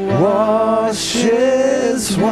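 Male worship singer singing slow, long-held notes with vibrato over a sustained accompaniment note.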